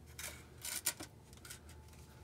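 A handful of light metallic clicks and clacks from the drive axle's inner CV joint being moved in and out at the rear differential, the strongest a little under a second in. The axle slides a long way in its housing, the play that let it hyperextend and break.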